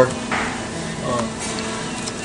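Restaurant dining-room background: music playing under a steady room hum, with brief faint voices.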